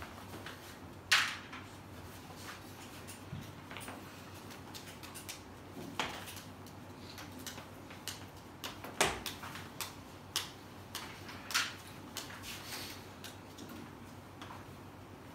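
Chalk on a chalkboard: a string of sharp taps and clicks as numbers and tick marks are written. The loudest taps come about a second in and about nine seconds in.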